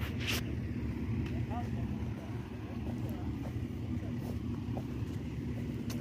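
A steady low engine rumble, with a sharp click just after the start.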